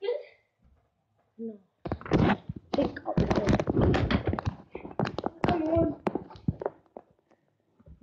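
Close handling of a phone camera: a dense run of knocks, thumps and rubbing on the microphone from about two seconds in until near the end, with bits of children's voices mixed in.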